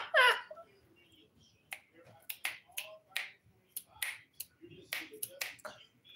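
A dozen or so sharp clicks or snaps, irregularly spaced over about four seconds, after a brief bit of speech at the start.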